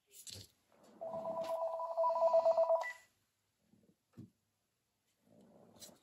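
A phone ringing: one ring of about two seconds, a fast warbling trill on two steady notes.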